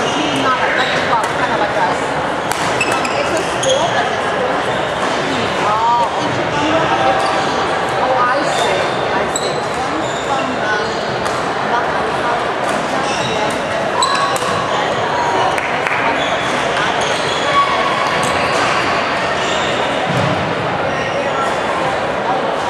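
Badminton rackets hitting a shuttlecock in a rally, with sharp knocks scattered through, over a steady hubbub of voices echoing in a large hall. Shoes squeak on the wooden court at times.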